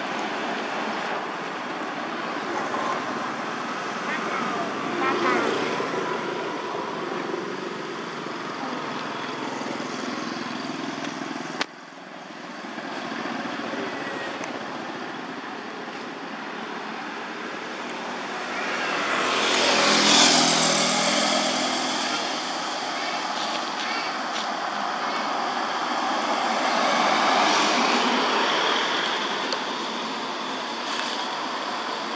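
Continuous outdoor background noise with a motor vehicle passing, swelling and fading about twenty seconds in, and faint voices. A sudden click and drop in level about twelve seconds in.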